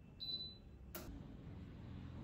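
Philips OTG oven control panel giving a single short high beep as its Start button is pressed, followed about a second later by a sharp click, over a low steady hum.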